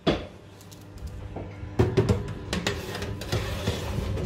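Metal baking tray knocking and scraping as it is slid onto the oven shelf: a sharp knock at the very start, then a run of clattering knocks from about two seconds in.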